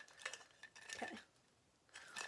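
Faint clicks and light clatter of plastic skull-shaped string lights knocking together as they are handled, in the first half second or so.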